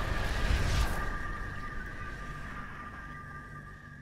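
Cinematic logo-intro sound effect: a deep rumbling boom with a last noisy surge just before a second in. It then fades away steadily, leaving a held high ringing tone over a low rumble.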